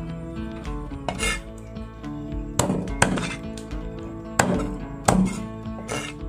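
Cleaver chopping raw chicken wings into pieces on a wooden cutting board: about five sharp, separate chops, over background music.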